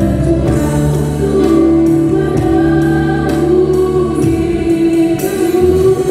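Live church worship band playing a gospel song: singers over keyboards, bass guitar and an electronic drum kit. Sustained keyboard and vocal notes, with cymbal strokes about twice a second through the second half.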